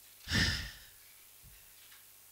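A woman's single audible breath into a close podium microphone, about half a second long near the start, breathy with a low pop.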